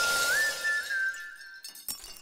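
Title-card sound effect: a glassy, shattering burst with a high ringing tone that steps up in pitch and slowly fades. Near the end comes a sharp hit, followed by small tinkling clicks.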